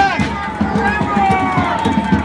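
Crowd of protesters chanting and shouting, many voices overlapping, with one long drawn-out shout in the second half.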